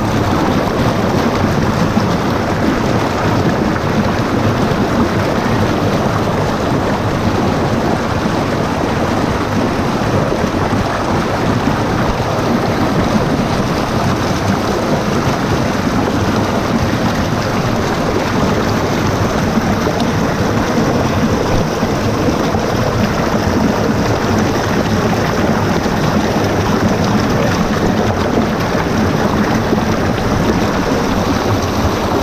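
Stream water rushing and splashing over boulders in a small cascade, a loud, steady rush with no letup.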